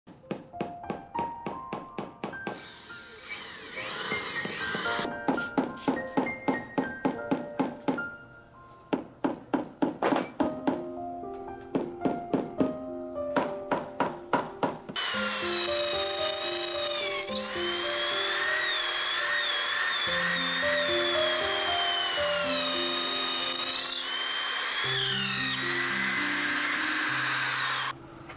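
Background music throughout. For the first half, runs of quick sharp taps, about four a second, fit a rubber mallet tapping a carved grey panel into place on a wall; from about halfway only the music, a sustained high melody over a bass line, is left.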